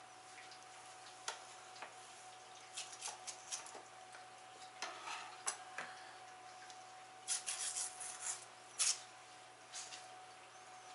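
Small kitchen handling noises: scattered light clicks, clinks and paper rustles as sticks of butter are unwrapped and put into a bowl, busiest and loudest near the end. A faint steady hum runs underneath.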